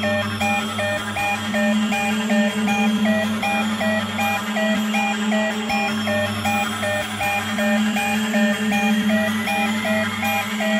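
Hardcore acid techno played from vinyl: a fast repeating synth riff of short notes hopping between two pitches over a steady low drone, with no kick drum. A rising sweep builds toward the end.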